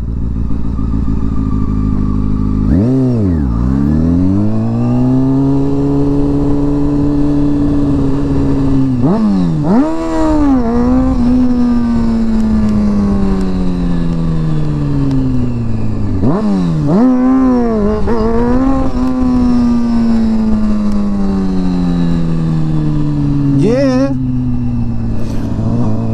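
Honda CBR sport bike engine heard from the rider's seat, given four hard bursts of throttle about six to seven seconds apart. Each time the pitch dips sharply and then jumps up, then sinks slowly as the bike runs on. These are the rider's wheelie-practice pulls.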